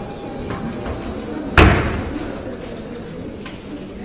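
A single loud bang about a second and a half in, trailing off briefly in a large hall, over the steady murmur of people talking.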